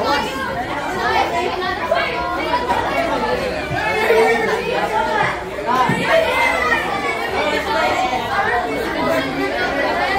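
Many students talking over one another, a steady overlapping chatter of voices in a crowded room.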